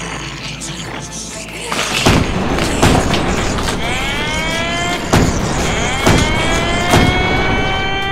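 Action-scene sound effects laid over music: a laugh about a second in, then a run of booms from about two seconds on, joined by whines that climb in pitch and level off.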